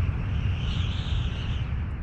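Steady deep rumble with a rushing-air hiss that swells about halfway through: a sound effect for a Boeing 747 airliner gliding with all four engines out.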